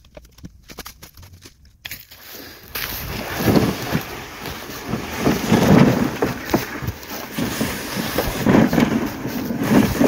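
Crunching and rustling movement through dry fallen leaves, loud and irregular with several swells, after a quieter start with a few light clicks.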